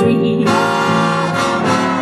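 Big-band jazz orchestra playing an instrumental passage between sung lines. The trumpets, trombones and saxophones hold a chord for about a second and a half.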